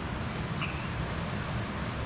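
Steady outdoor background noise: a low rumble under an even hiss, with one brief faint high chirp about half a second in.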